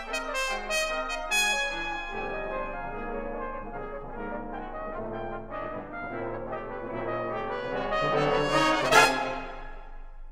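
Full brass band playing a modernist concert piece: layered, sustained chords with several sharp accents in the first second and a half. The sound then swells to a loud accented peak about nine seconds in and falls away.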